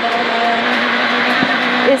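Peugeot 206 XS Group A rally car's four-cylinder engine running hard at a steady pitch, heard from inside the cabin over loud road noise.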